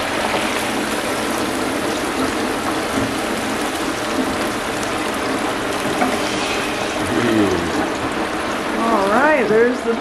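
Hot peanut oil sizzling steadily in a Masterbuilt electric turkey fryer as the deep-fried turkey is raised out in its basket and drains over the pot. A voice comes in over it near the end.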